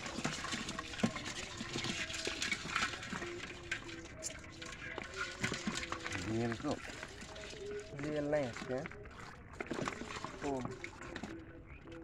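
Live crabs, fish and snails in a metal basin, shifting and scrabbling in a run of small wet clicks and crackles, with water trickling off the catch. A voice speaks briefly a few times in the second half.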